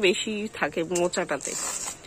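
A person talking, then a short dry rasping near the end as banana-flower bracts and florets are stripped by hand.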